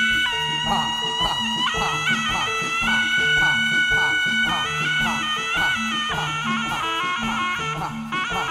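Live jaranan dance accompaniment: a reedy wind melody held and moving in steps over a steady percussion beat of about three strikes a second and a repeating pattern of low bass notes.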